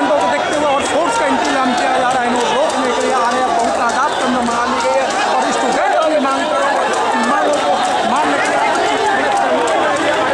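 A protest crowd, many voices talking and shouting over one another in a steady, loud hubbub with no single voice standing out.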